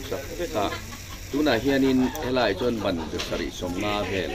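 A man speaking, his voice carried through the whole stretch in short phrases.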